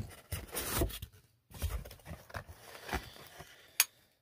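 Packaging being handled: rustling and crinkling of plastic wrap and scraping against a cardboard box in irregular bursts, with one sharp click near the end.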